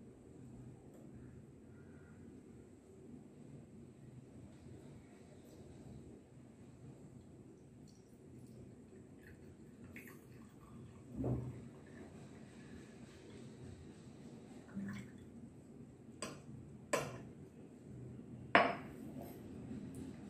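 Glass beakers being handled on a glass tabletop: faint pouring of liquid from one beaker into another, then a handful of sharp glass-on-glass knocks and clinks from about halfway on as the beakers are set down.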